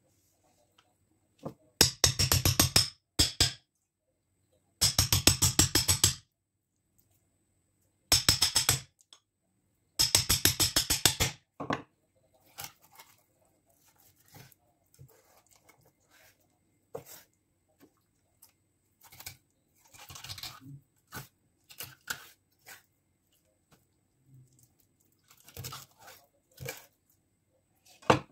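Large kitchen knife cutting a rainbow trout into steaks on a wooden cutting board: four loud bursts of fast, crunching strokes in the first dozen seconds as the blade goes through the fish, then scattered light knocks of the blade on the board.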